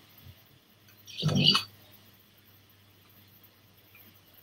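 Near silence, broken once about a second in by a man's short, hesitant spoken 'um'.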